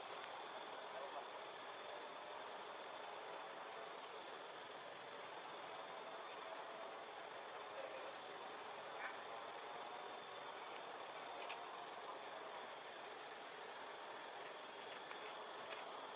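Insects droning in one steady, continuous high-pitched tone over a soft background hiss, with no change in level.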